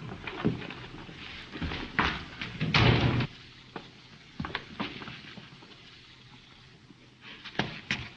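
A door and scattered knocks and shuffling noises as people leave and come into a room, the loudest a rustling burst about three seconds in, over a faint steady hum on an old film soundtrack.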